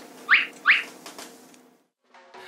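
Two quick rising whistle-like chirps about half a second apart, a comic sound effect added in editing.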